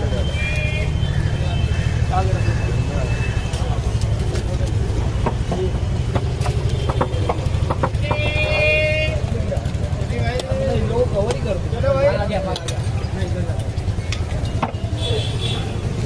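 Busy street ambience: a steady low traffic rumble under background chatter, with a few light clicks and a short high-pitched tone, like a horn, about eight seconds in.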